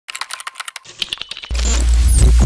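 Rapid computer-keyboard typing clicks, then about one and a half seconds in a sudden loud, deep boom with a hiss over it that keeps going.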